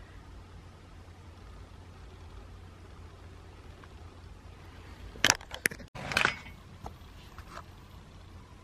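Quiet room tone with a steady low hum. About five seconds in come a few sharp clicks, then a short burst of rustling, handling-type noise, with a brief cut-out between them.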